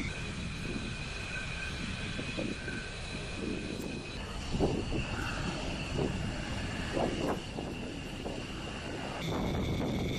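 Jet aircraft engines running on a flight line: a steady high-pitched whine over a low rumble, with gusts of wind on the microphone. The pitch of the whine shifts abruptly about four seconds in and again near the end.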